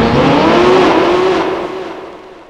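A car engine accelerating away, its note rising at first and then holding, over a rushing noise, fading out over the last half second.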